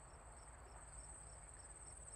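Faint crickets chirping: a steady high trill with softer chirps repeating about four times a second, as a night-time background.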